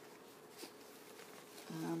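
Faint rustling of flax leaf strips being woven through each other by hand, over a faint steady hum. A brief spoken "um" comes near the end.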